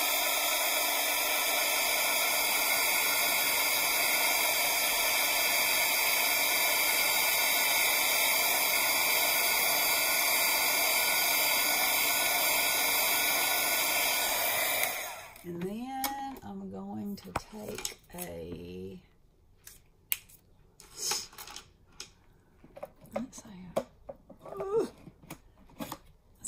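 Handheld craft heat tool blowing steadily to dry watercolour on a paper card, switched off sharply about fifteen seconds in. Light taps and clicks of handling follow.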